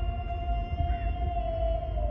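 One long, steady pitched note with overtones, held and then starting to sag downward in pitch near the end, over a low rumble.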